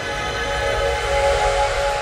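Outro music sting: a sustained synth chord of several held tones over a hissing whoosh, swelling slightly to a peak about midway.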